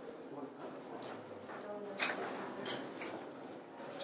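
Meeting-room background: a faint murmur of people with a few small, sharp clicks and clatters about halfway through.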